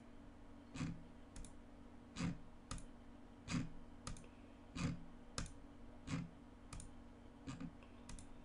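Computer mouse clicking repeatedly, in pairs of a sharper click and a lighter one about half a second later, a pair roughly every 1.3 seconds, over a faint steady hum.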